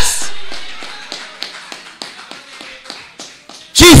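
A run of quick, even taps, about five a second, with the echo of a shouted word dying away in a large room at the start.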